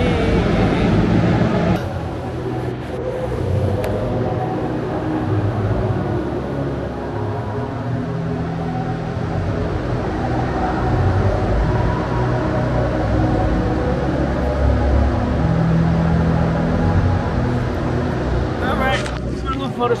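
Live band music playing at a distance, with held bass notes that change every second or two and voices faintly over them.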